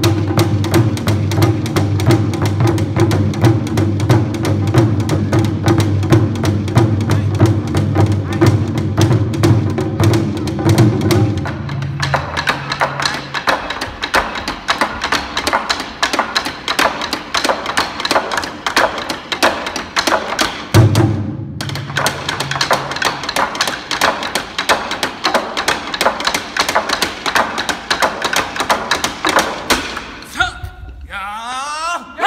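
Ensemble of Japanese wa-daiko drums struck with wooden bachi in a fast, steady rhythm. For the first dozen seconds the strokes carry a deep drum boom. After that the low tone drops away and the strokes turn lighter and sharper, with a short break about 21 seconds in.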